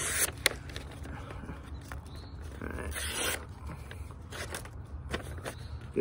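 Small carbon-steel fixed-blade knife slicing through a hand-held sheet of paper in a sharpness test: a few short scraping, rustling cuts, the longest about three seconds in, with light ticks of the paper between them.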